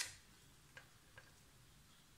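Near silence broken by a few faint light ticks of china on the tabletop: a short click at the very start and two smaller ticks under a second and just over a second in.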